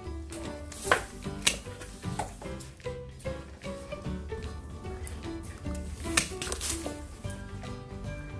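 Background music, with a few sharp snips of hand pruning shears cutting through a mandarin tree's branch: about a second in, again half a second later, and once more about six seconds in.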